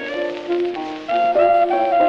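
Clarinet playing a short instrumental fill of held notes over piano accompaniment, between the singer's lines, on a 1924 78 rpm blues record.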